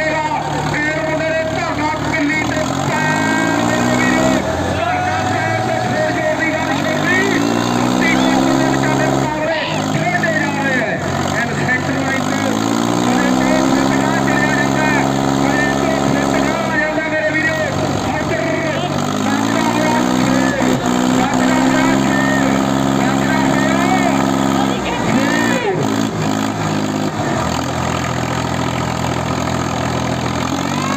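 Diesel engines of a Sonalika DI 745 and a New Holland 5620 tractor running flat out under heavy load, pulling against each other in a tug of war. The revs climb, hold high for several seconds, sag and climb again about three times as the pull surges, with the front wheels lifting off the ground.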